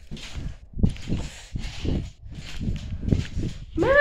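Soft, irregular thumps about twice a second with rustling, from a child bouncing on a mattress while holding the camera.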